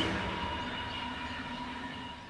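Steady droning background sound with two faint held tones, slowly fading out.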